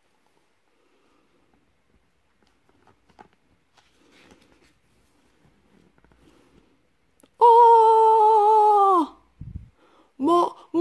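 A voice letting out one long, loud 'aaaah' scream, acting out the startled bear's 'AAAAHHHHH!' printed in the picture book, sliding down in pitch as it ends. Faint rustling of book pages comes before it.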